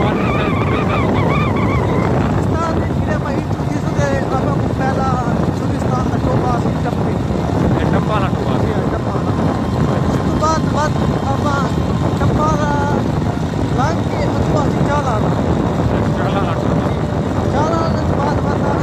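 Wind buffeting the microphone on a moving motorcycle, a steady dense rush that runs throughout. A man's voice breaks through it in short snatches.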